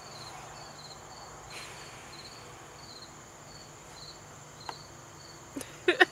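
Crickets chirping outdoors: an even, high-pitched chirp repeating a little under twice a second over a steady, higher insect trill. Near the end, a couple of short, loud breathy vocal sounds from a person.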